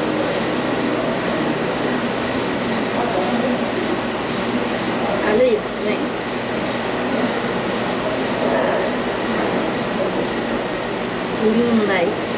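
Busy café background din: a steady hum with indistinct chatter of other customers, and a brief louder sound about halfway through.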